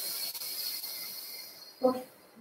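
A long breath blown out through pursed lips: a steady soft hiss with a faint whistle, fading away near the end.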